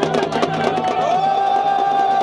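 Fast drumbeats, then about a second in a long shout rises and is held: the Holi 'bomb' cry, a voice broken up by a hand patting over the mouth.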